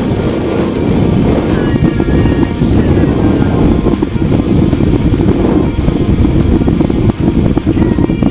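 Wind rushing over a camera's microphone under an open skydiving parachute, a loud, steady rumble, with music mixed in.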